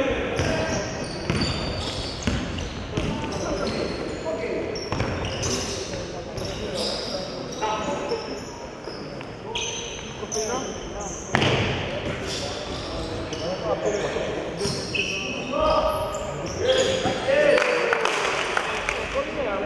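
Indistinct voices with frequent knocks and short clinks throughout, in a busy room.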